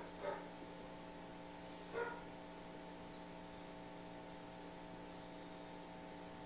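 Steady electrical mains hum made of several steady tones. Two short vocal sounds break in over it, one just after the start and one about two seconds in.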